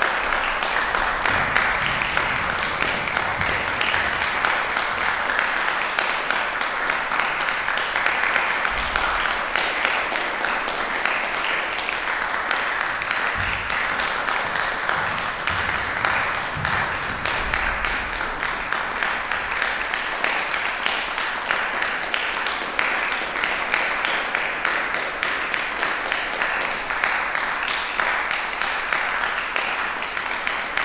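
Audience applauding, a steady clapping that carries on without a break.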